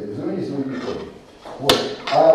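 A man's voice speaking for about the first second, then a quieter stretch and a single sharp click about three-quarters of the way through.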